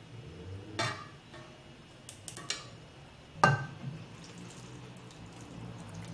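A few light clicks and knocks of wooden chopsticks against a saucepan and a ceramic bowl while tofu puffs are moved across, then soft liquid sounds as curry laksa soup is poured from the pan into the bowl.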